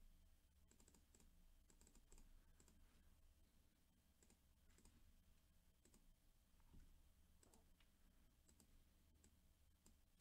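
Faint computer keyboard and mouse clicks, scattered and sometimes in quick little runs, over near-silent room tone.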